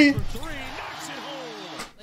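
Basketball TV broadcast audio: an announcer talking over steady arena crowd noise, cutting off abruptly near the end.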